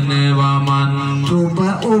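A man's voice chanting a Sinhala verse in a slow, melismatic style. He holds one long low note, then slides through a short ornament up to a higher note near the end.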